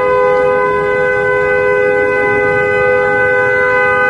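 A car horn sounding continuously as one steady two-note chord, over low background noise.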